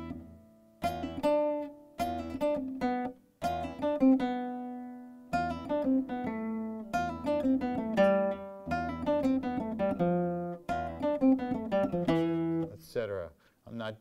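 Nylon-string flamenco guitar playing a picado passage: runs of single plucked notes alternated between index and middle fingers, broken by a few strummed chords and short pauses.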